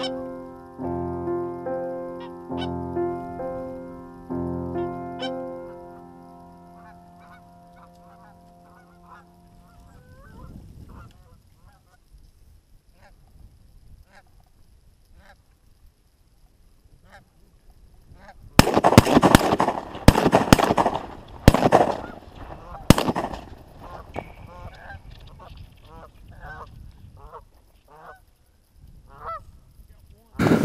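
Piano music fades out over the first ten seconds, giving way to Canada geese honking. About two-thirds of the way through, a quick volley of about five shotgun blasts goes off, the loudest sounds here. The geese keep honking afterwards.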